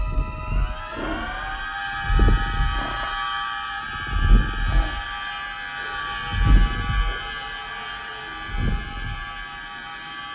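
Orchestral film score holding a tense sustained chord that swells upward in the first second and then holds, over deep low thuds about every two seconds: the giant footsteps of the Stay Puft Marshmallow Man.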